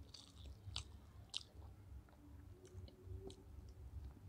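Faint eating sounds by hand: chewing, with scattered short clicks and crackles as fingers gather chicken biryani rice and bring it to the mouth.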